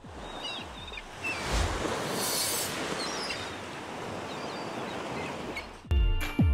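Ocean surf breaking and washing onto the shore, a steady hiss with a louder break about two seconds in.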